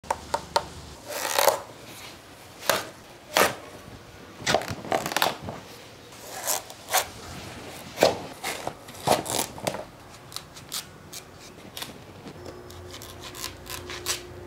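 Knife cutting a whole watermelon: a series of irregular crisp cuts and knocks through the rind, sparser near the end.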